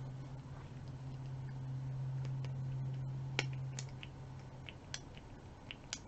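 A small pump bottle of liquid foundation being shaken and handled, with a few light clicks in the second half, over a steady low hum that stops about two-thirds of the way through.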